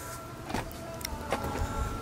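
Tesla Model X falcon-wing door's electric drive running with a faint steady whine as the door lifts, with a few light clicks.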